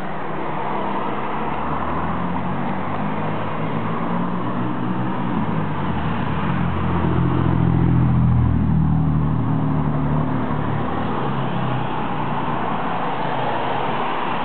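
A motor vehicle driving past on the road, its engine growing louder to a peak about eight seconds in and then fading away, over a steady rushing background.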